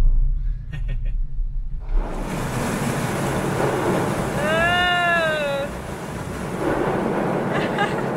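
Waterfall water pouring down onto a car's roof and windscreen, heard from inside the cabin: a low driving rumble gives way about two seconds in to a dense, rushing hiss of falling water that lasts to the end. A single voice calls out once in the middle, rising and falling in pitch.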